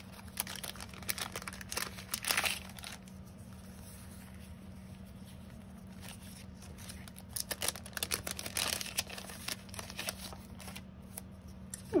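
Clear plastic sleeve of washi paper stickers crinkling and rustling as hands open it and sort through the stickers. It comes in bursts over the first three seconds and again over the last four or so, quieter between.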